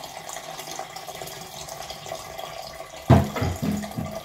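Blended ginger juice pouring from a blender jar through a mesh strainer into a plastic pitcher, a steady trickle of liquid. A sharp knock about three seconds in.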